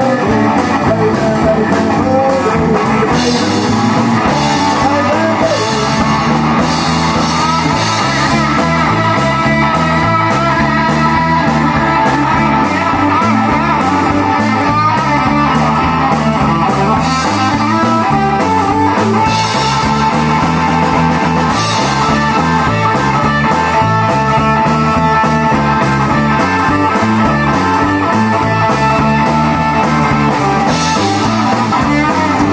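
A live blues boogie played on electric guitars and a drum kit, with a repeating boogie riff in the low end and steady drumming.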